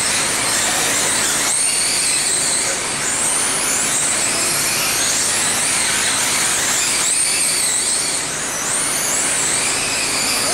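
Several 1/10-scale electric RC sprint cars racing on a dirt oval, their electric motors giving a high whine that rises and falls in pitch as they speed up and slow through the laps, over a steady noisy background.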